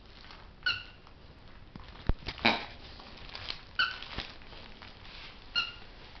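A dog's plush toy squeaking three short times as the yellow Labrador chews it, with a few sharp clicks and a louder rustling squeeze in between.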